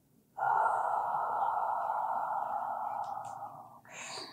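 A woman breathing out slowly and audibly through the mouth in one long, controlled exhale, starting a moment in and lasting about three and a half seconds before fading away near the end.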